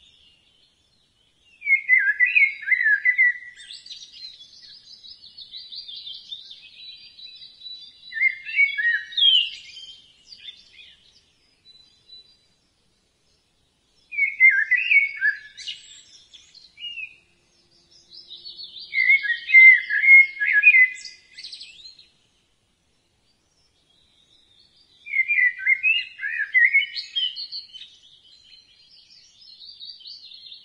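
Birds singing: bursts of quick chirping song, each two to three seconds long, come about five times with short silent gaps between, over fainter, higher chirps.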